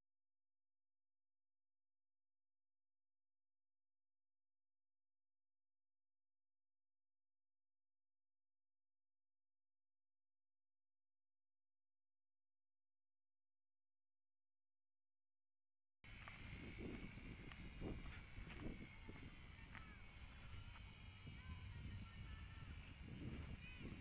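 Complete silence for about the first two-thirds, then faint outdoor sound: wind rumbling on the microphone under a steady, slightly wavering high whine from the Syma X5C-1 quadcopter's small brushed motors as it flies overhead.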